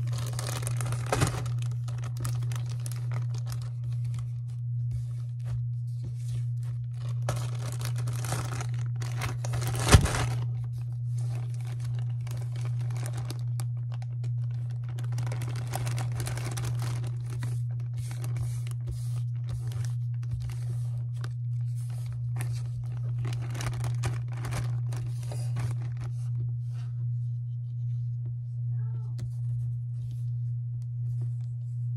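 A plastic zip-top bag crinkling and rustling in bursts as moldable play sand is handled and tipped into a dish. A sharp knock comes about ten seconds in, over a steady low hum.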